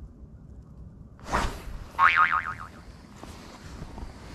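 A short swoosh about a second in, followed by a cartoon 'boing' sound effect with a wobbling pitch, an editing effect that marks a missed fish.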